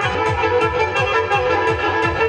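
Turkish folk dance music played live on an arranger keyboard: a fiddle-like melody over a quick, steady drum beat.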